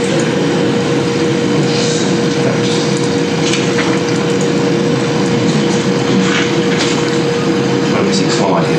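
Steady room hum and hiss with a constant low tone, and a few faint taps scattered through it.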